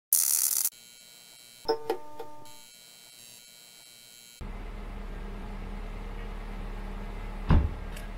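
Intro sound effects: a short burst of static-like noise, a faint high steady buzz, then a few quick ringing notes about two seconds in that die away. After a cut, a steady low background hum with one loud thump near the end.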